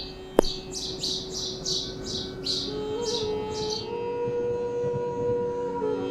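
A small bird chirping over and over, about three short high chirps a second, stopping about four seconds in. Underneath runs a sustained instrumental drone, the start of sitar music, that steps up in pitch around three seconds in. A single sharp knock comes near the start.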